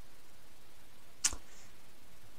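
A single sharp computer mouse click a little over a second in, followed by a faint softer tick, over a steady low hiss.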